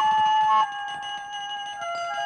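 Background film music: a flute-like woodwind plays a slow melody of long held notes that step from one pitch to the next, dropping in level about half a second in.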